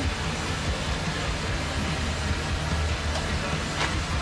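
Badlands electric winch on the front bumper running, spooling its line in with a steady low motor drone. A couple of light clicks come near the end.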